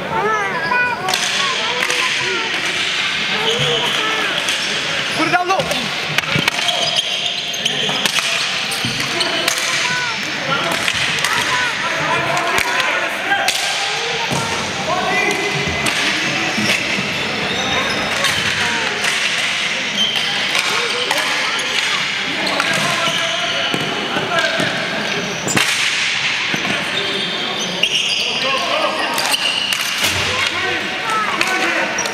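Ball hockey play in a large indoor arena: frequent sharp knocks of sticks and the ball against sticks and boards, with short squeaks and shouts over a steady busy din.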